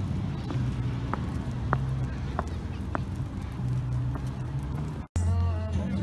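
Footsteps on a paved path at a steady walking pace, over a steady low outdoor rumble. The sound breaks off suddenly about five seconds in, and voices follow.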